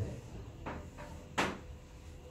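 Chalk striking a chalkboard in quick writing strokes as fractions are crossed out: three short knocks, the sharpest about one and a half seconds in.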